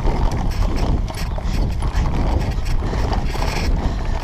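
Mountain bike rattling over a rough dirt path, picked up by a camera mounted on the handlebars: a dense run of irregular clicks and knocks over a steady low rumble.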